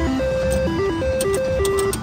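IGT Triple Stars reel slot machine playing its electronic spin tune while the reels spin: a quick run of beeping notes stepping up and down in pitch, with a few sharp clicks, over a low casino background hum.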